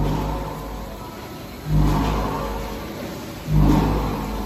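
Chicken-packaging line machinery running in cycles: a motor surges up suddenly and fades, three times about every two seconds, with a low hum.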